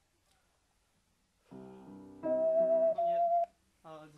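A held accompanying chord starts about a second and a half in. An ocarina then joins with one clear, steady note held for about a second before both stop.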